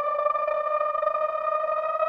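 Background music: one held synthesizer note, steady and bright with many overtones, bending very slowly upward in pitch.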